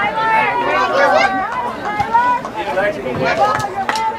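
Overlapping chatter of several people talking over one another near the microphone, with a sharp knock near the end.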